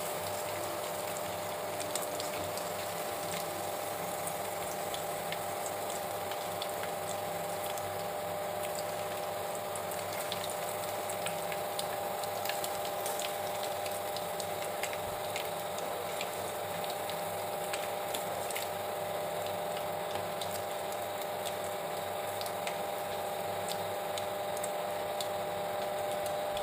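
Chicken pakoda pieces deep-frying in hot oil: a steady bubbling sizzle dotted with fine crackles. A steady low hum runs under it.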